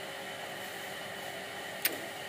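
Steady background hiss with a faint continuous hum and a single sharp click near the end.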